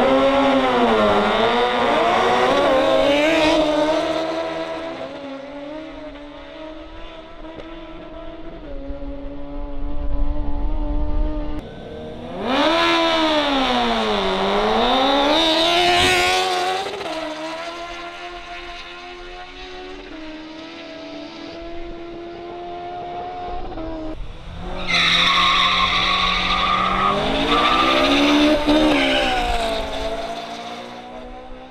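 Drag-racing engines at full throttle: sport motorcycles launching and accelerating hard, their pitch climbing and dropping with each gear change, in three loud bursts with quieter engine running between; the last burst, near the end, is from racing cars.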